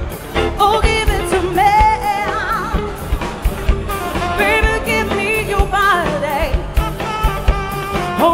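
Live band playing: a woman sings lead in long, wavering, sliding lines over drums, electric guitar, keyboard and bass.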